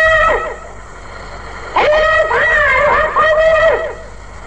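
A man's voice chanting a Sindhi naat, a devotional poem, unaccompanied, in long held, wavering notes. One phrase ends about half a second in, and after a short pause a new phrase begins just under two seconds in.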